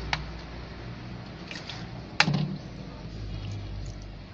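A few sharp clicks and one louder knock about two seconds in, over a low steady hum.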